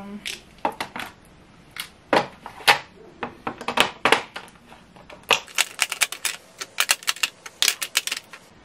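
Plastic lip gloss and lipstick tubes clicking and clattering against each other and an acrylic drawer organizer as they are moved by hand. Scattered knocks at first, then a quick run of clicks from about halfway through.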